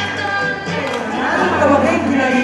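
Background music with people's voices talking over it, the talk getting louder in the second half.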